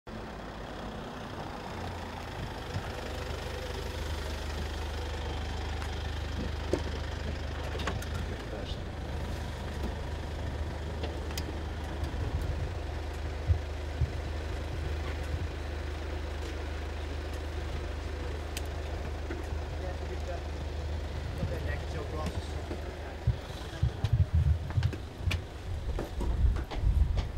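Mercedes-Benz van idling with a steady low hum, with a few sharp clicks and knocks as its sliding side door is worked and a passenger climbs out. Near the end come irregular low thumps.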